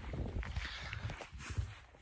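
Footsteps of a person walking, heard as irregular soft low thumps that fade out near the end.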